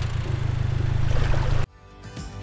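Narrowboat engine running with a steady low drone under a wash of outdoor noise, cut off suddenly near the end, where quiet background music takes over.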